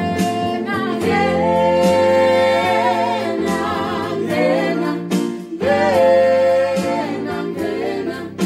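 Small mixed group of voices singing an isiZulu gospel song in harmony, accompanied by an electronic keyboard. The voices hold long notes with vibrato, with a short break between phrases about five seconds in.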